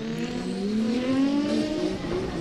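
Drift car engine running at high revs, its note climbing steadily as it accelerates.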